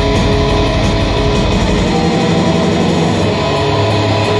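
Live black metal at full volume: distorted electric guitars and bass, recorded from the crowd. About halfway through, the low end shifts as the riff changes.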